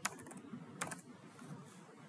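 Computer keyboard keystrokes: a few sharp, quiet clicks as a word is typed, the loudest at the very start and just under a second in.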